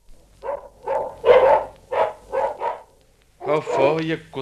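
Dogs barking in a quick run of about eight short barks, the noise of a dog fight. A man's voice starts near the end.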